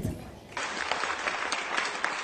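Audience applauding, starting about half a second in and holding steady.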